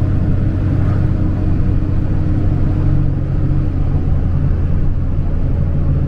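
Dodge Ram's Cummins turbo-diesel engine and road noise heard from inside the cab while driving, a steady low drone. The truck is running normally with the transmission shifting again now that the severed fan-clutch wiring fault is fixed.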